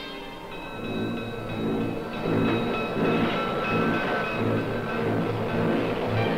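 A moving train: a repeating rhythmic rumble of rolling wheels that grows louder about a second in, over orchestral music with held high notes.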